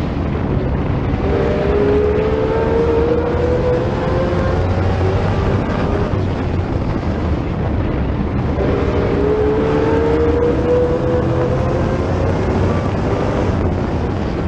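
Stock car engine running hard at racing speed, its pitch climbing twice as it accelerates, with another race car's engine running close alongside.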